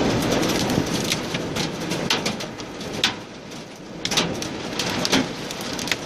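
Hail and rain pelting the roof and windshield of a minibus, heard from inside the cabin: a steady patter with irregular sharp hits of hailstones, a few of them louder.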